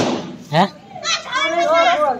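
Women and a child talking close by, in lively back-and-forth conversation, with a brief sharp sound about half a second in.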